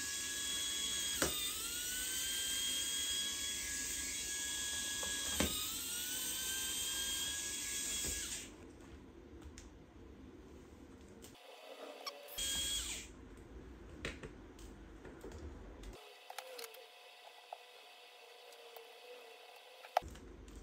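Electric precision screwdriver whining steadily at a high pitch as it backs out the battery screws. Twice, about a second and five seconds in, there is a click and the pitch dips, then climbs back. The whine stops after about eight seconds and returns briefly about four seconds later.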